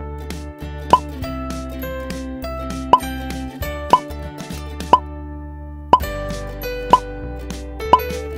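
Cartoon pop sound effects: seven short, loud, upward-gliding bloops about one a second, the sound given to shopping bags popping into place in stop-motion, over light background music.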